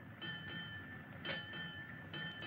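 A bell struck twice about a second apart, each stroke ringing on with a steady, clear tone.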